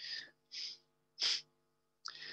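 A man's breath sounds into a close microphone during a pause in speech: three short breathy puffs, the last and loudest about a second and a quarter in.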